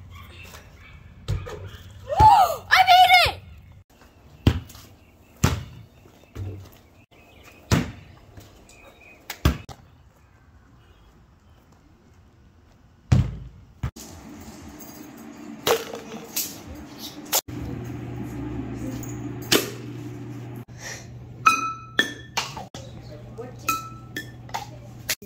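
A string of separate knocks and thuds from balls bouncing and hitting hard surfaces, with a brief excited shout about two seconds in. A steady low hum sits underneath in the second half.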